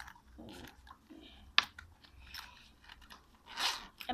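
A fabric pencil case being handled: rustling and scraping with a sharp click about a second and a half in.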